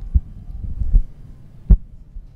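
Microphone handling noise: a few dull, low thumps and bumps over a low rumble, the loudest a little before the end.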